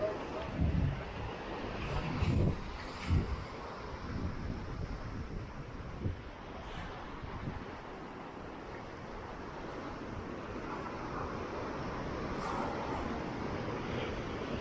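Atlantic waves breaking and washing over rocky volcanic shoreline, heard as a steady rush of surf, with wind buffeting the microphone in several loud low gusts during the first three seconds.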